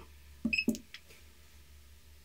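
Enter key pressed on a Model 480 weight indicator's keypad: a couple of soft taps and a short, high beep about half a second in, then a small click. The press starts the indicator's live zero-offset measurement for calibration.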